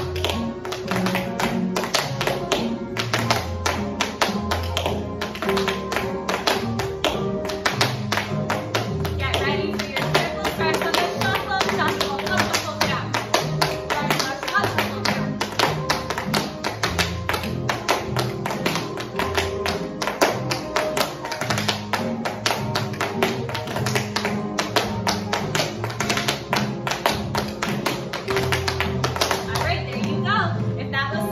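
Tap shoes of two dancers striking a hard floor in a steady run of slow tap time steps (shuffles, hops and flat steps), over recorded music with a steady beat.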